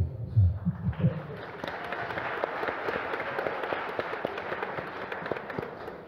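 Audience applauding. It starts about a second in after a few spoken words and tails off near the end.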